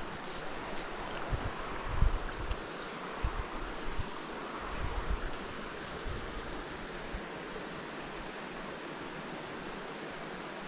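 Steady rush of a mountain stream's flowing water, with a few low bumps of wind or handling on the microphone in the first half.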